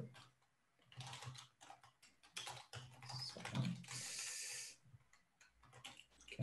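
Computer keyboard typing: a run of quick, irregular key clicks, faint, with a short rush of breathy noise about four seconds in.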